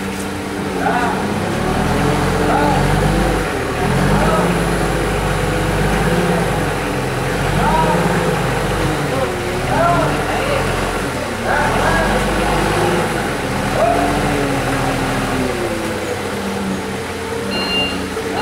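Cat 50 forklift's engine running under load, its pitch rising and falling as it manoeuvres, with voices calling out over it. Its reversing beeper starts beeping just before the end.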